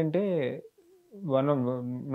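A man talking in drawn-out syllables, broken by a pause of about half a second near the middle.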